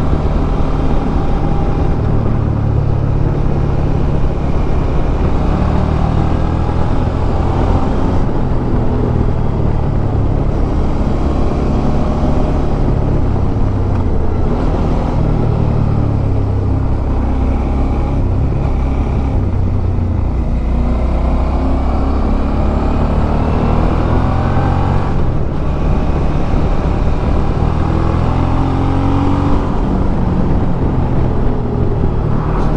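Suzuki V-Strom 650 XT's 645 cc V-twin engine running under way, with steady road and wind rumble. About two-thirds of the way in the engine note climbs steadily as the bike accelerates, then drops.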